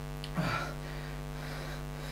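Steady electrical mains hum with a brief low vocal murmur about half a second in.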